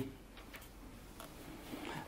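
Faint room tone in a meeting room during a pause in a talk.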